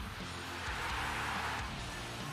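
Background music with steady low held notes, and a rushing noise that swells and fades about halfway through.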